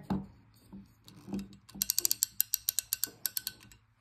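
The wind-up music box mechanism of a musical whiskey pourer being cranked: a rapid, even run of ratchet clicks, about eight a second, lasting about two seconds after a few light handling knocks.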